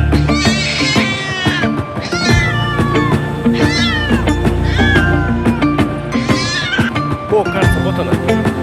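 A domestic cat meowing repeatedly, about five calls that each fall in pitch, over background music.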